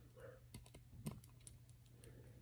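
Faint, scattered small clicks and taps of a torque screwdriver and the optic's mounting screws being worked, the sharpest click about a second in, over a low steady hum.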